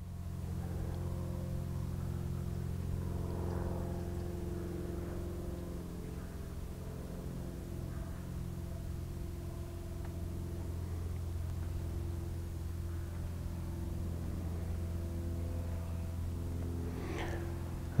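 An engine running steadily, heard as a low, even hum that holds one pitch throughout.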